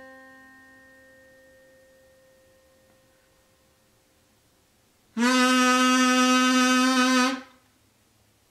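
The fading tail of a plucked acoustic guitar note, middle C, dies away over the first few seconds. Then a harmonica plays the same middle C as one loud, steady held note for about two seconds and stops.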